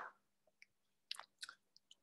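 Near silence with a faint steady low hum and a few faint, short clicks.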